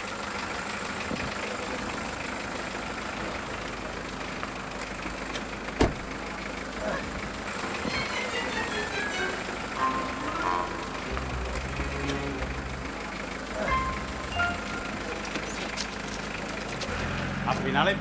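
A small Peugeot hatchback's engine running as the car drives slowly across a lot and pulls up. There is one sharp knock about six seconds in, and light background music.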